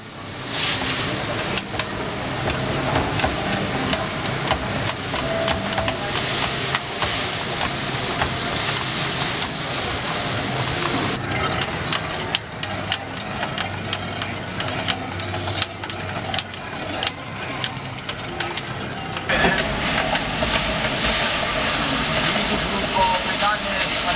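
Busy restaurant kitchen ambience: indistinct voices over a steady machine hum, with scattered clicks and clatter. The low hum changes about three-quarters of the way through.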